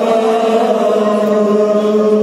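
Kashmiri noha, a Shia lament, chanted by male voices, holding one long steady note.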